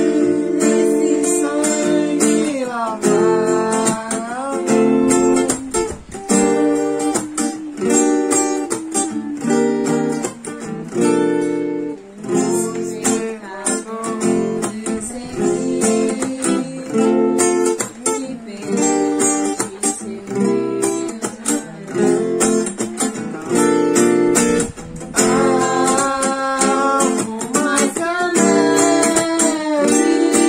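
Acoustic guitar strummed in steady chords, accompanying a hymn sung over it.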